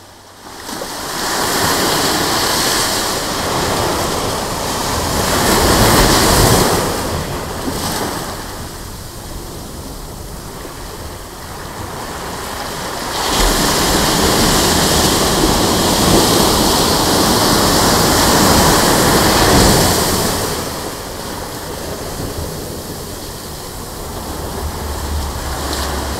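Ocean surf breaking on a sandy beach, a steady wash of noise that swells and ebbs: a long surge peaking about six seconds in, a lull, then a sudden louder surge about halfway through that holds for several seconds before easing off.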